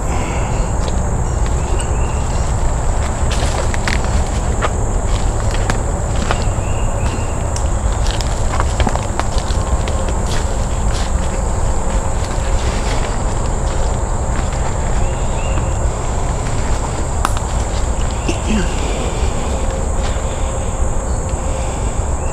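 Footsteps on a leaf-littered forest trail, with scattered light clicks of twigs and leaves underfoot, over a continuous high insect drone and a steady low rumble on the microphone.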